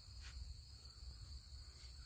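Faint, steady chirring of crickets, with a low rumble underneath.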